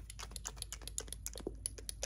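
A quick, irregular run of clicks and taps from long acrylic nails and the dropper against a serum dropper bottle as it is handled and the dropper is drawn out.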